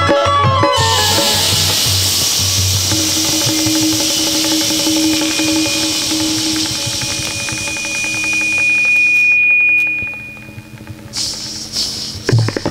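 Live qawwali music: the drumming stops about a second in, leaving voice and harmonium holding long notes under a steady hissing wash. The level dips, then the drums come back in near the end.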